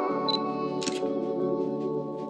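Instrumental background music with sustained notes. A short high beep and then a camera shutter click come just under a second in.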